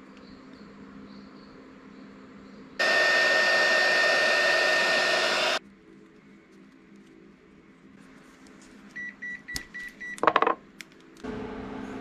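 Handheld heat gun blowing for about three seconds: a steady rush of air with a high whine, switched on and off abruptly. Later comes a quick run of short high beeps.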